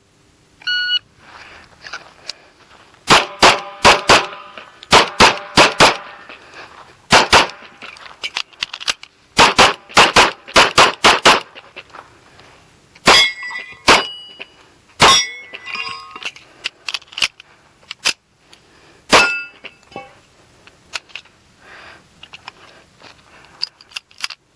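A shot timer's start beep, then a .45 ACP Kimber Custom II 1911 pistol fired in rapid strings of two to four shots, about twenty in all with short pauses between strings, the last shot near the end. A few of the later shots are followed by a brief ringing.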